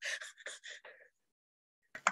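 A woman's soft, breathy laughter: a few short bursts that trail off within the first second.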